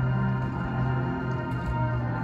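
Marching band playing slow, sustained chords, with the notes held steadily and the sound full and organ-like.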